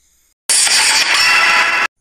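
Loud, noisy transition sound effect between news items, about a second and a half long, starting half a second in and cutting off suddenly.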